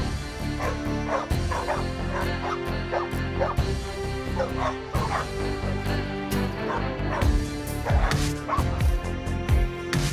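A dog barking and yipping over and over, about two to three times a second, over background music with a steady beat.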